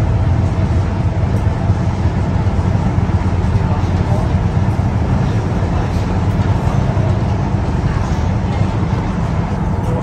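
Tyne and Wear Metro Class 994 Metrocar running along the line, heard from inside the carriage: a steady low rumble of the moving train.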